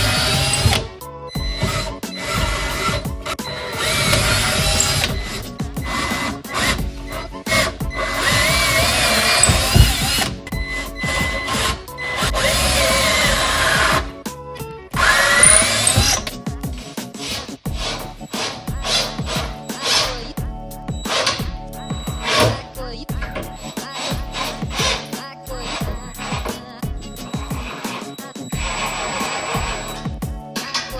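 Cordless drill boring pilot holes into a wooden 2x10 board, in several runs of a few seconds with its whine rising and falling in pitch, mostly in the first half. Background music with a steady beat plays throughout.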